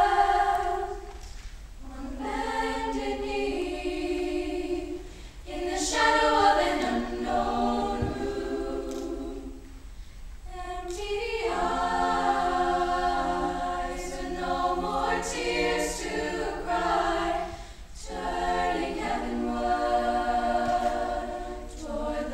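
Girls' choir singing in harmony, in long held phrases with short breaks between them.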